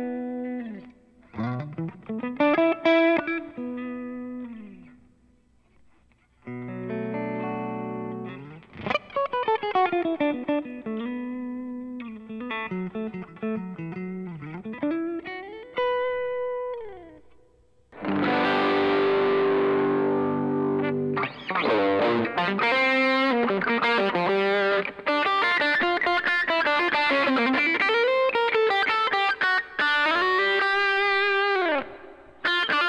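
Latitude Cardinal headless electric guitar with humbucking pickups, played through a Fender GTX100 modelling amp: single-note phrases with string bends and a held chord on a clean amp model, in short bursts with gaps. From about 18 s in the playing turns denser, louder and more driven.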